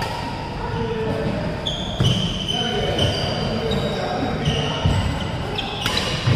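Badminton rally on an indoor court: shoes squeaking sharply on the court floor again and again, with thudding footfalls and a couple of sharp racket hits on the shuttlecock, one about two seconds in and one near the end, in an echoing hall.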